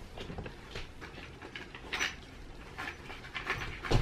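Dog sniffing around inside a fabric duffel bag: a few short, quiet sniffs with soft rustling of the bag.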